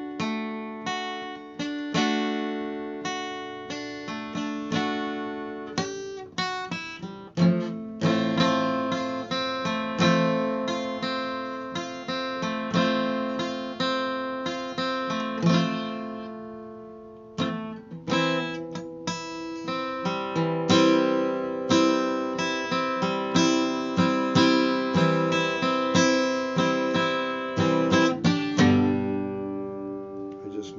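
Cutaway acoustic guitar strummed in a steady chord progression, chords struck over and over. Around the middle one chord is left to ring and fade for a second or so before the strumming picks up again.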